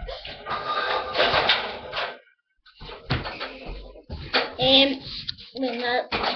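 Indistinct voices mixed with rustling and clattering handling noises; the sound cuts out completely for about half a second partway through.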